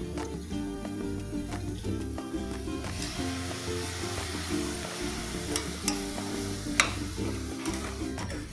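Background music with a steady repeating beat, over mushroom masala sizzling in a steel pressure cooker as a metal spatula stirs it. The sizzle grows from about three seconds in, and there are a few sharp clicks of the spatula against the pot in the second half.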